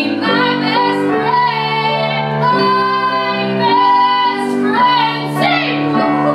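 Female voices singing a musical-theatre duet over accompaniment, in long held notes that change pitch about once a second.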